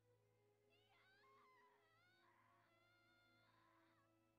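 Near silence: room tone, with very faint high-pitched wavering sounds in the background.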